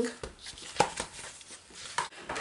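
A few light taps and knocks from handling a sticker book and planner pages on a tabletop.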